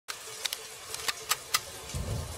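Heavy rain falling steadily, with half a dozen sharp, irregular ticks over it.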